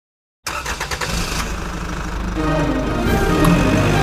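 Car engine sound effect cutting in suddenly about half a second in and running steadily, with background music joining about halfway through.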